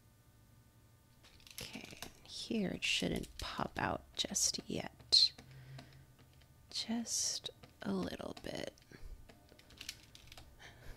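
After about a second of near silence, quiet wordless mumbling and whispering close to the microphone, mixed with clicks from a computer keyboard.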